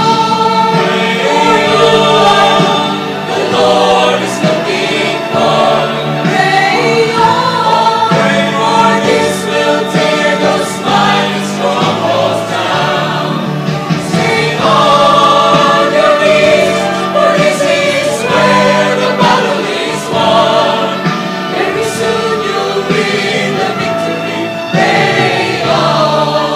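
A mixed choir of men and women singing a gospel worship song together, sustained and continuous, the voices recorded separately and layered as a virtual choir.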